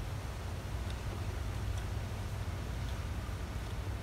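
Steady low rumble of outdoor background noise with a faint even hiss, with no distinct events.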